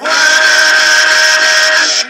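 A loud burst of hissing, whistle-like electronic noise within the music, holding two steady pitches. It starts abruptly and cuts off just as abruptly, much louder than the soft guitar music around it.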